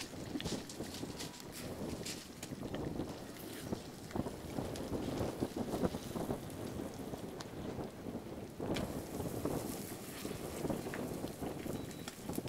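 Thermite rail-weld charge burning in its crucible: a steady rushing hiss with scattered crackles. The noise grows a little brighter about two thirds of the way in.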